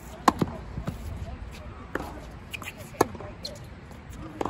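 Tennis rally: sharp racket strikes on the ball, three of them about a second and a half and a second apart, the first and last the loudest, with fainter ball bounces between.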